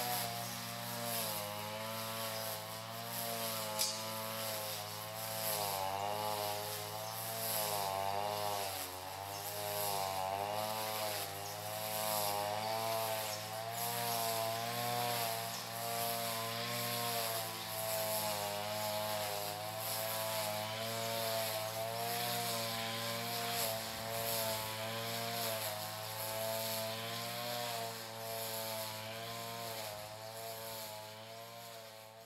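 Petrol string trimmer running continuously as it cuts grass, its engine pitch rising and falling every second or two.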